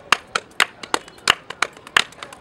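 Two people clapping palmas: interlocking rhythmic hand-clap patterns. The result is a quick, uneven run of sharp claps, about four or five a second, some loud and some soft.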